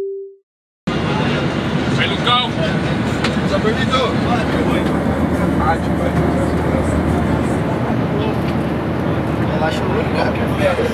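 Steady drone of an airliner cabin, the jet engine and air noise filling the cabin, with passengers' voices talking over it. A short tone at the very start cuts off, and the cabin noise starts suddenly about a second in.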